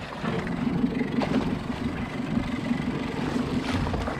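A boat's engine idling steadily, mixed with wind and sea noise.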